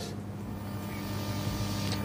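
Steady background noise with a low hum, swelling slightly, picked up by a reporter's outdoor microphone on an open live link.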